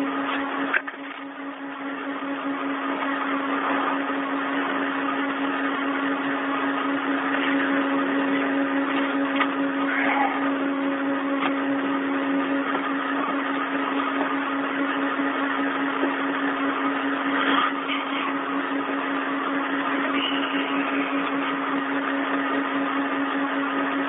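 Open radio communication channel with no one talking: a steady static hiss with a constant low hum, cut off above the treble like a telephone line.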